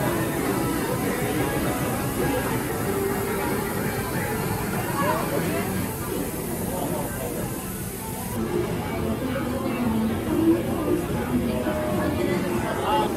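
Background music with singing playing through the venue's speakers, over a hubbub of visitors talking.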